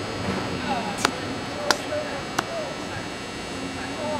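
Spectators talking, with three sharp, evenly spaced clicks about two-thirds of a second apart, starting about a second in.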